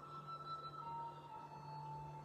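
Faint, slow relaxing background music: sustained soft tones over a low drone, with the held note changing to a lower one a little under a second in.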